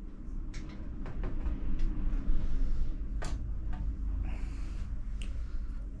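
Faint clicks and light rustling of monofilament fishing line being handled and pulled taut while a knot is tied, over a steady low rumble.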